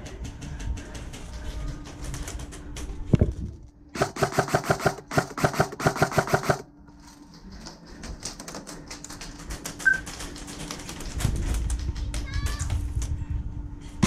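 Airsoft electric gun firing a full-auto burst of about two and a half seconds, a rapid string of clicks over a motor buzz, near the middle. Scattered single clicks and ticks of other play are heard before and after.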